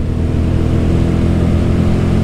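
Royal Enfield Guerrilla 450's single-cylinder engine running at a steady pitch in fifth gear, pulling up a hill, with wind rushing past.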